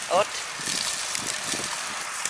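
Sliced shallots and chilli sizzling in hot oil in an aluminium pot: a steady hiss with faint crackles.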